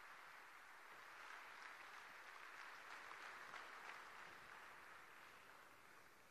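Faint applause from an audience, rising to its fullest in the middle and dying away near the end.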